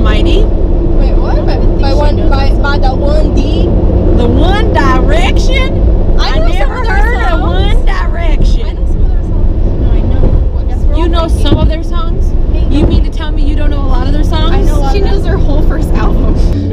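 Voices talking inside a moving car's cabin, over the steady drone of the engine and road.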